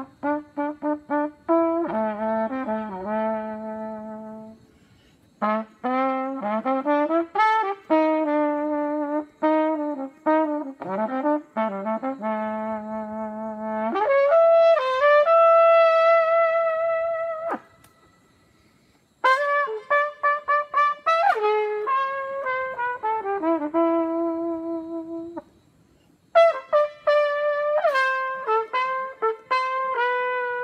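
Unaccompanied trumpet playing a slow solo melody in phrases of runs and held notes, broken by short pauses, with a long held note near the middle.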